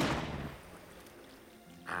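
A loud backfire bang from a vintage MG roadster's exhaust, dying away over about half a second into a low rumble. A mechanic takes it, by ear, for a busted muffler.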